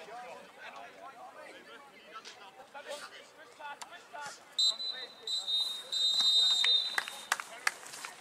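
Referee's whistle blown three times, two short blasts and a long one: the full-time whistle ending the match. Before it, spectators chatting.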